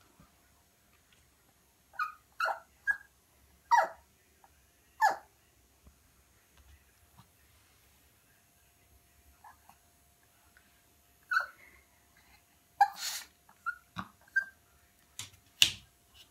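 Young Yorkshire terrier giving short, high-pitched whines that fall in pitch, five in quick succession a couple of seconds in and four more later, frustrated at not reaching a toy she sees in a mirror. A few sharp clicks come near the end.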